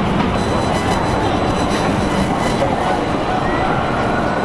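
Busy city-street ambience: a steady din of traffic and passers-by, with music mixed in.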